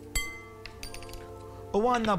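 A spoon clinks once against a glass mixing bowl just after the start, leaving a short ring, as baking powder is tipped into the dry ingredients. A few fainter taps follow.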